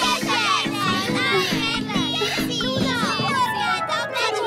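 Cartoon background music with a pulsing bass line, under a racket of many high, squeaky little voices chattering at once.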